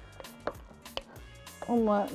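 A wooden spoon knocking and scraping against a glass jar as it scoops ghee, with two sharp taps about half a second apart.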